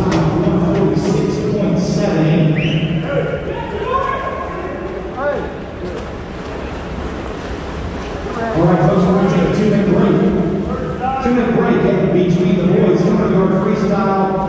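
Voices talking and calling out in a reverberant indoor pool hall, with a quieter stretch in the middle.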